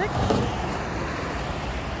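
Cars and a pickup truck passing on a wide multi-lane road: a steady rush of tyre and engine noise.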